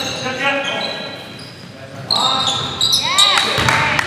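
Basketball game sounds in a gym: sneakers squeaking on the hardwood floor in short high-pitched chirps and a few gliding squeals, with the ball bouncing and players' voices, echoing in the hall. It gets busier from about halfway through.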